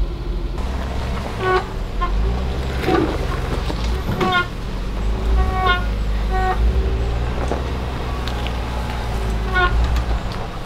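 Jeep engine running low and steady while crawling down a rocky trail. About half a dozen short, high squeaks come and go over the drone.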